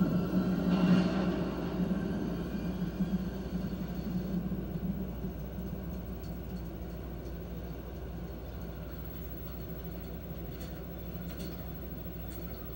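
Low, rumbling background music from a television soundtrack, fading out over the first four seconds or so. After that only a steady low hum remains, with a few faint clicks near the end.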